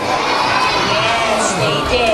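Crowd of children's voices in a large hall, many overlapping shouts and calls together.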